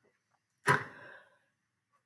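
A single sharp click about two-thirds of a second in, dying away within half a second.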